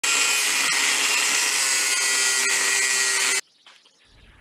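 Electric angle grinder cutting into a metal panel: a loud, steady, high whine and hiss that cuts off suddenly about three and a half seconds in.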